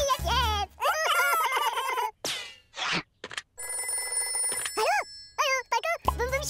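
A cartoon telephone ringing for about a second near the middle, a steady electronic ring, after two short falling whooshes. Around it, high cartoon gibberish voices chatter.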